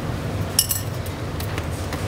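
Light clicks and clinks of the shell of a hot grilled egg being cracked and picked off over a dish: a short cluster about half a second in, then a couple of single clicks, over a steady low hum.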